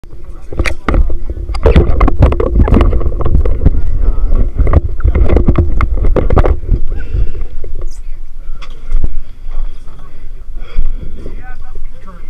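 Rapid knocks and clatter, like gear and the camera being handled on a boat deck, over a low rumble, with indistinct voices. The knocking stops about seven seconds in and the rest is quieter.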